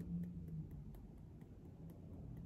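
Faint fingertip taps on the side of the other hand (the EFT karate-chop point): a run of light ticks over a low room hum.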